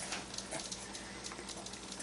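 Faint, soft mouth sounds and small ticks from a baby eating baby food, over quiet room noise.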